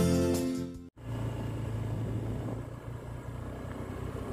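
Guitar music fades out within the first second. After a brief break comes the steady low hum of a vehicle's engine and tyre noise as it rolls along a gravel road.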